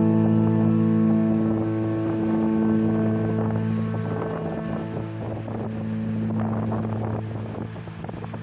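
Background music holding a sustained chord that slowly fades. Under it, small waves breaking on the beach and wind buffeting the microphone come up in the second half.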